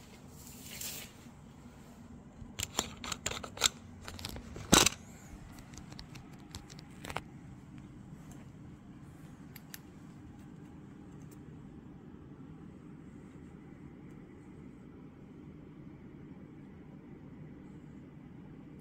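Handling noise as a camera is taken up by hand: several light clicks and knocks over about two seconds, ending in one sharper click, followed by a faint steady low hum.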